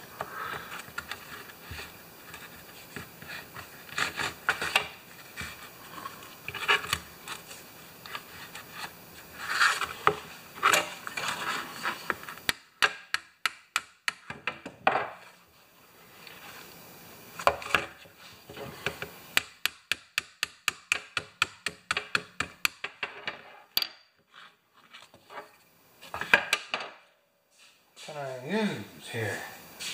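Ball-peen hammer tapping a steel hinge pin into a spring-loaded mower stop-bar housing: many light, sharp metallic taps in quick runs, mostly in the second half. Before that, scraping and a few knocks as the metal rod and plastic housing are handled.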